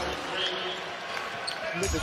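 A basketball being dribbled on the hardwood court over the general noise of an arena crowd.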